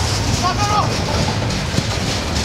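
Outdoor soccer-field ambience: a steady low rumble with short distant shouts from players about half a second in, and a single sharp knock near the end.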